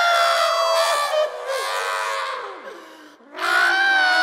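A cartoon character screaming in long, high-pitched held cries. The first fades about a second in, and a second scream begins near the end after a brief lull.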